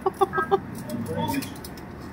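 A person giggling in a quick run of short, high pulses near the start, followed by softer voice sounds.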